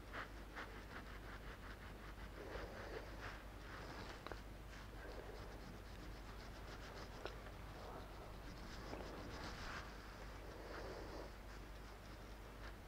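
Faint, quick soft tapping and rubbing of fingertips dabbing and blending cream concealer into the skin around the eyes.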